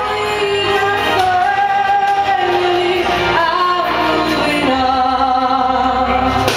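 A woman singing karaoke into a handheld microphone over a backing track, holding long notes that step from one pitch to the next.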